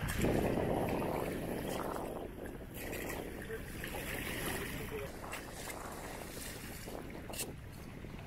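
Wind buffeting the microphone over the wash of shallow river water, as a wet cast net is hauled in through the shallows. The sound is loudest in the first second or so, then eases.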